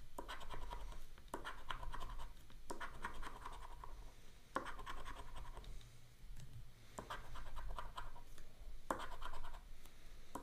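The coating of a scratch-off lottery ticket being scraped off with the edge of a poker chip, in short bursts of rapid strokes with brief pauses between them.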